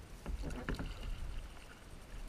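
Stand-up paddleboard paddle stroking through the water: a few short splashes and drips as the blade dips and pulls, over a low steady rumble of water against the board.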